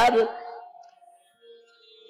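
A man's chanted verse syllable ends just after the start and dies away over about a second, leaving near silence with a faint held tone in the last half second.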